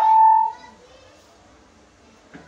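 A man's voice through a handheld megaphone ends on a steady held tone about half a second in, followed by a pause with only faint background noise.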